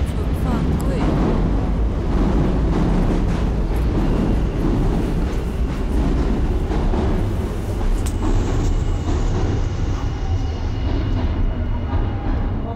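A train running past close by: a loud, steady low rumble with no break.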